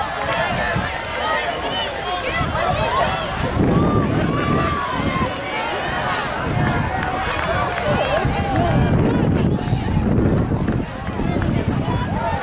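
Spectators shouting and cheering, many voices overlapping, over the footfalls of a large pack of cross-country runners on grass.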